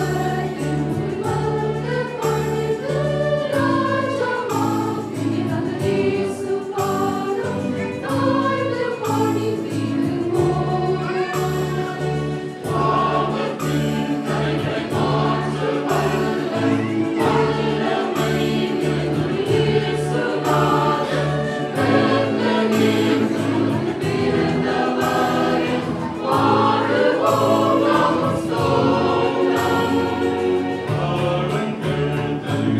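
Mixed choir of children and adults singing a Christmas carol together, over instrumental accompaniment with steady bass notes and a regular beat.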